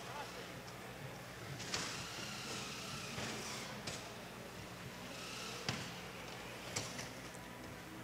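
Faint robotics-arena background: a steady low hum with a soft haze of room noise and a few faint knocks scattered through it.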